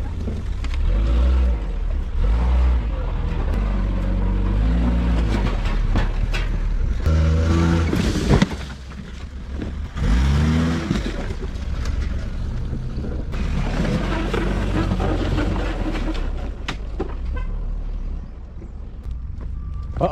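Car engine running as the battered sedan is driven, its revs rising and falling several times, with a sharp bang about eight seconds in.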